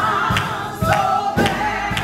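Gospel music: voices singing over a steady beat of a little under two strokes a second.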